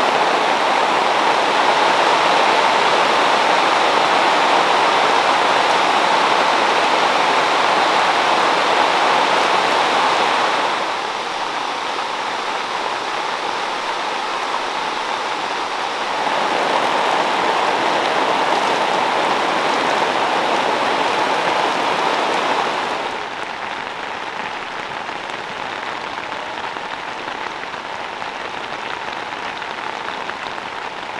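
Heavy rain falling as a steady hiss. Its loudness and tone change abruptly three times: down about eleven seconds in, up again about sixteen seconds in, and down and duller about twenty-three seconds in.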